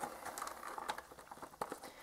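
Faint handling of a cardboard diecast-model box: fingers gripping and sliding on the card, with a few light taps and rustles.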